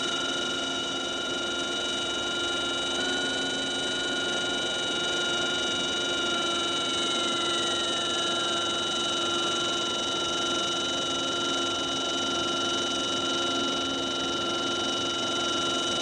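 CH-46 helicopter cockpit sound: a steady high turbine whine of several held tones over a hiss, with one tone sliding down in pitch from about seven to ten seconds in.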